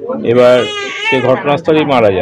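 A man's voice speaking in Bengali.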